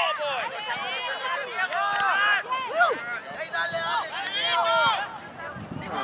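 Several voices calling and shouting on and around a soccer pitch, overlapping with no clear words, some of them high-pitched.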